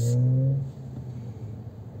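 Car engine running, heard as a steady low hum, with its pitch rising slightly as it accelerates in the first moment before it eases off.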